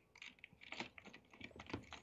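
Faint, irregular light clicking of typing on a computer keyboard.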